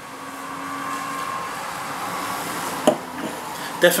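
A long, steady sniff through the nose into a glass of beer, drawing in its aroma for about three seconds and growing slightly louder, with a faint whistle in it. A short click follows just before the end.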